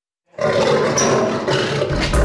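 Lioness snarling at close range from behind cage bars, starting abruptly about a third of a second in after a brief dead silence.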